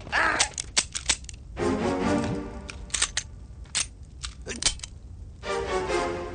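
A string of pistol shots, sharp cracks in irregular groups of one to three, over film background music; the gun is being fired until it runs out of bullets.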